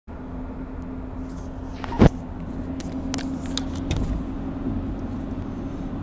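Road and engine noise inside a moving car's cabin: a steady low rumble with a steady hum. A loud knock about two seconds in, then several lighter clicks, as the camera is handled and set in place.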